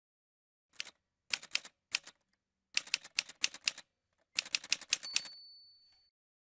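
Typewriter sound effect: keys clacking in several short bursts, then a bell dings about five seconds in and rings out over the last second.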